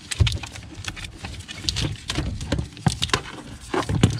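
Car wiring harness being handled under the dashboard: irregular clicks and taps of plastic connectors, with rustling of the wire bundle as it is worked loose.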